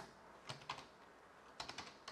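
Computer keyboard keys tapped faintly: a couple of keystrokes about half a second in and a quick run of them near the end, typing a short entry.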